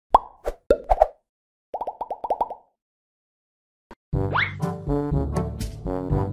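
Cartoon-style pop sound effects, a few single pops, then a quick run of about six pops, each with a short falling tone. After a brief silence, upbeat brass music with a steady beat starts about four seconds in, opening with a quick upward glide.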